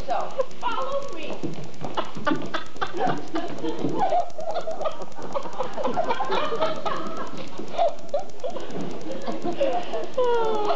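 Indistinct, overlapping voices with no clear words, broken by a few short knocks about two to three seconds in.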